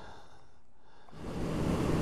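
Faint quiet for about a second, then wind rush and the steady drone of a Honda CB650F's inline-four engine come up as the bike runs along the highway.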